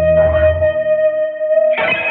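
Post-punk / coldwave band music. A held, effects-laden guitar tone rings while the bass drops out. Just before the end a new guitar chord is struck and left ringing.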